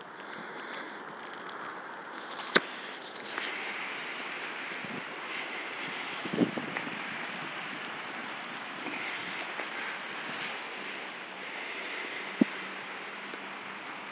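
Steady outdoor wind noise on a phone microphone in wet, snowy weather, with two sharp clicks, one about two and a half seconds in and one near the end, and a softer knock in between.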